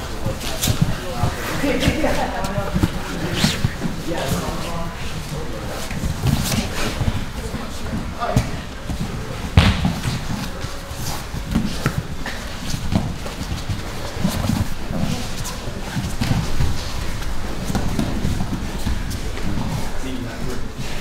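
Grapplers rolling on training mats: scattered thuds and knocks of bodies hitting the mat, with shuffling and indistinct voices in the background.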